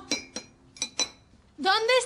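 A teaspoon clinking against small ceramic cups, about four quick strikes that each ring briefly.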